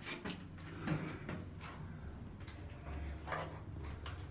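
Faint scuffs, knocks and rustles of a person shifting about and handling the camera inside a small bare concrete room, a few separate taps spread through the quiet.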